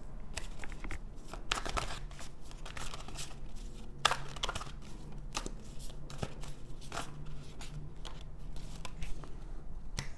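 A deck of tarot cards being shuffled and handled, a run of dry card flicks and taps at irregular intervals.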